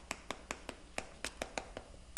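Chalk on a blackboard: a quick, irregular series of about ten sharp taps and clicks as the chalk strikes the board with each short stroke of writing.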